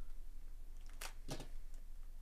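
Trading card pack wrapper being handled and pulled open, with two short crinkles about a second in, about a third of a second apart, over a steady low hum.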